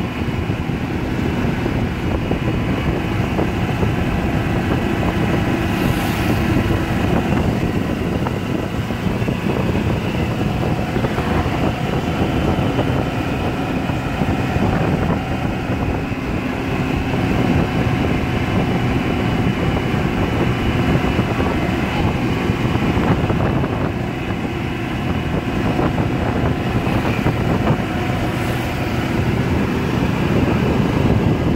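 A small vehicle running steadily along a road, heard from on board: a constant engine hum with road and wind noise.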